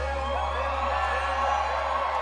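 A live band's last low bass note held and ringing out while the crowd cheers and whoops.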